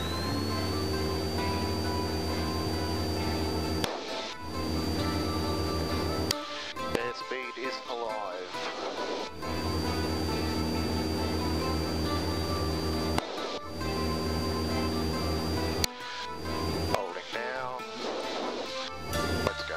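Single-engine light aircraft's engine and propeller at full takeoff power, a steady drone with a held high whine, heard through the cockpit intercom. The sound cuts out abruptly several times, and a brief voice comes through in some of the gaps.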